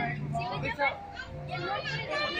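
Children's voices chattering and calling out over one another at play.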